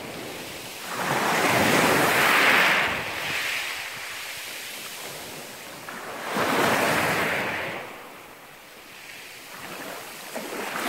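Small sea waves breaking on a pebble beach. Two surges rush in, one about a second in and another about six seconds in, and each fades into a softer wash.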